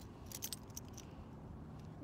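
A few light, sharp clicks and clinks in the first half second, then a faint steady background hiss.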